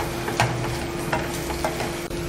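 Spatula stirring and scraping onions, garlic and dried red chillies frying in oil in a nonstick kadai, with a light sizzle and a few sharp scrapes of the spatula. A steady hum runs underneath.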